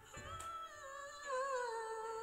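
A woman singing close to the microphone: one long wordless note, held and then sliding down in pitch about halfway through.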